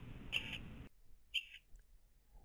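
Yaskawa Sigma-7 rotary servo motor on a demo axis making two brief high-pitched buzzes about a second apart as it runs its repeated short moves. The servo is under a very aggressive high-gain tuning for low position error.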